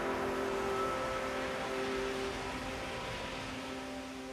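The closing fade of an ambient downtempo electronic track: held synthesizer pad chords over a soft wash of hiss, growing steadily quieter.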